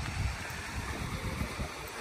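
Wind buffeting the microphone outdoors: an uneven low rumble under a steady hiss.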